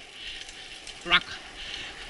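Mountain bike rolling down a dirt trail: a steady hiss of tyre and trail noise, with a rider's shout about a second in.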